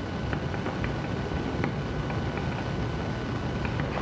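Steady background rumble and hiss with a faint high whine, broken by a few light ticks.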